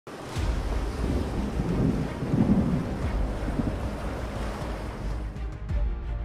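Strong wind on the microphone over heavy, rough seas, with waves breaking; a deep, steady rumble. Music begins to come in faintly near the end.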